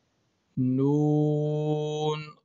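A man's voice reciting the joined Arabic letters nun-kha in a long, drawn-out, chant-like tone. It starts about half a second in and is held on a steady pitch for about a second and a half.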